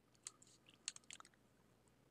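Near silence with a few faint, short clicks: one about a quarter second in and a small cluster around one second in.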